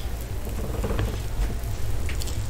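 Close-miked chewing of a large soft pretzel: small wet mouth clicks and crackles, a few stronger about a second in, over a steady low hum.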